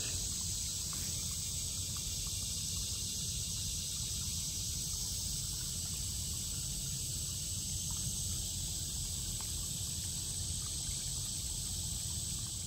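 Steady outdoor ambience: a constant high-pitched insect drone, likely crickets, over a low rumble, with no change through the stretch.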